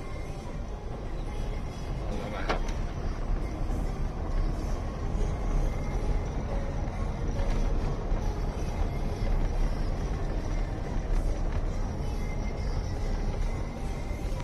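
Low, steady rumble of a car rolling over a stone-block paved driveway, heard from inside the cabin. There is a single short click about two and a half seconds in.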